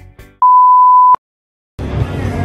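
A single steady electronic beep, one pure mid-pitched tone about three-quarters of a second long, starting and stopping abruptly. It comes just after background music ends and is followed by a moment of total silence, then crowd noise near the end.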